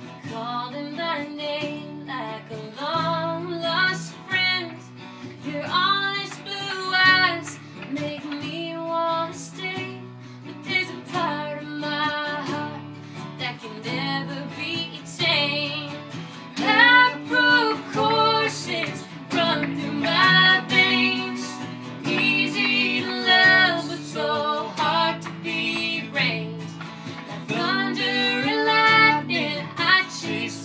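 Acoustic country song: a woman singing over acoustic guitar.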